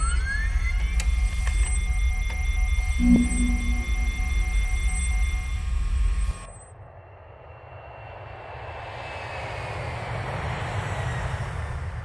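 Sci-fi film sound design: a deep rumble under steady electronic tones and beeps from a computer interface, with a rising glide near the start. It cuts off sharply about six seconds in. Then a hissing whoosh swells slowly, with a tone gliding down through it.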